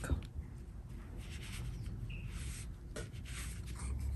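A wide wash brush is swept across semi-sized Jen Ho paper in overlapping strokes, giving a few faint, soft brushing swishes.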